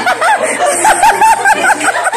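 Hearty laughter: a fast run of high-pitched 'ha' bursts, about six a second.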